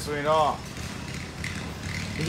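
A man's voice speaking a few words at the start, then a steady low hum with no voice for the rest.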